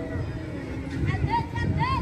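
Children's high-pitched shouts on a football pitch, several rising-and-falling calls in the second half over a background of voices.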